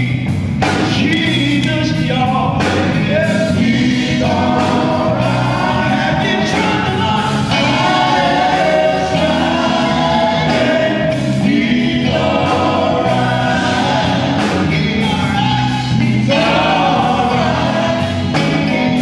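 Live gospel music: male vocalists singing in harmony, backed by a band with drums, bass guitar and keyboard.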